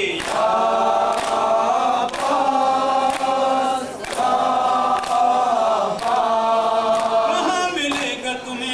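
A group of men chanting an Urdu noha in unison, in long held phrases, with hands slapping on chests in matam, about one strike a second.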